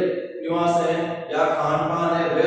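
A man's voice speaking Hindi, with long drawn-out syllables in a chant-like delivery.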